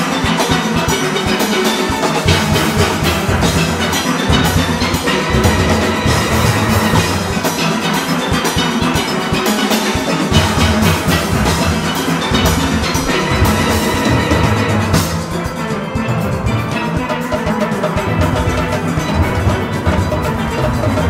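A full steel orchestra playing: many steelpans, from high tenor pans to deep bass pans, struck in a fast, driving arrangement at competition tempo, with drums keeping the beat.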